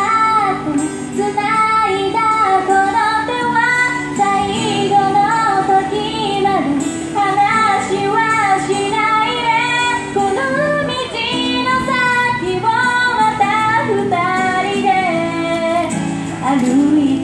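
A woman singing a Japanese pop ballad into a microphone, amplified, with acoustic guitar accompaniment.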